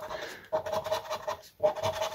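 A scratcher scraping the latex coating off a National Lottery scratch card in runs of rubbing strokes, broken by short pauses about half a second and a second and a half in.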